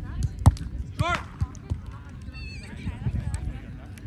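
A volleyball struck with a single sharp smack about half a second in, followed by a player's short shout, with scattered players' voices.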